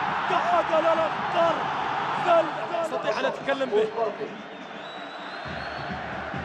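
Football stadium crowd noise with raised voices calling out over it, a steady din that quietens about four and a half seconds in.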